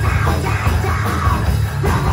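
A heavy rock band playing loud at full tilt: electric guitars, bass guitar and a Tama drum kit, with a shouted vocal over the top.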